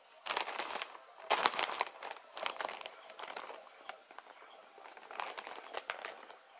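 Plastic mailer bag crinkling in irregular bursts as a cat pokes its head into it and paws at it.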